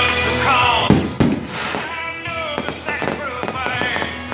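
Fireworks bursting, with two sharp bangs about a second in and then a scatter of smaller pops. Music with singing plays loudly throughout.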